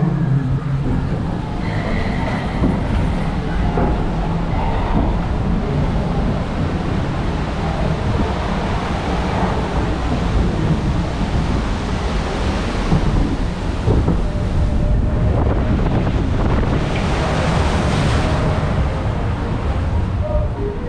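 Steady rushing and splashing water of the Splash Mountain log flume channel as the log boat moves along it, with wind on the microphone adding a low rumble.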